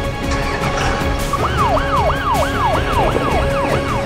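Fire-engine siren in a fast repeating yelp, each cycle a quick rise and a slower fall, about three a second, starting about a second and a half in, over background music.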